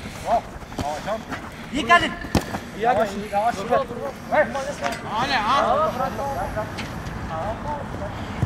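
Men's voices calling and shouting across a football pitch during play, with a sharp knock about two and a half seconds in.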